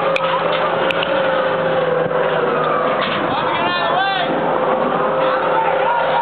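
Steady motor-vehicle and street traffic noise: a constant rush with a steady hum, and a quick run of chirping glides about four seconds in.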